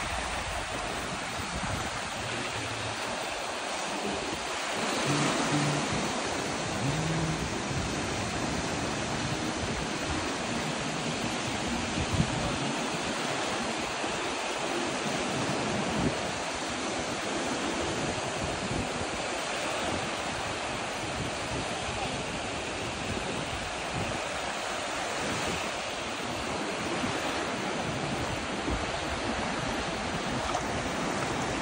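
Ocean surf washing in over a shallow beach: a steady rushing hiss of small breaking waves. Faint music sits underneath, clearest in the first several seconds.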